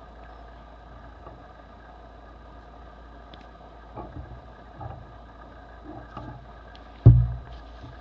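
Old paper booklets being handled, with a few soft rustles and one loud dull thump a little after seven seconds, over a steady low hum.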